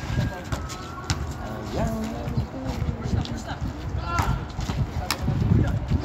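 Basketball game on an outdoor concrete court: a few irregular, sharp thuds of the ball and players' feet hitting the court, mixed with scattered short shouts from the players.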